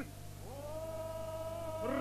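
A singer's voice slides upward into a long held note about half a second in, then slides up again near the end, over a steady low electrical hum.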